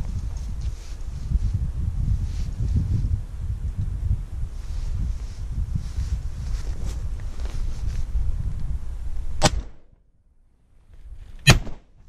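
Two 12-gauge shotgun shots about two seconds apart, a double fired at passing pigeons, after a stretch of low rumbling noise on the microphone.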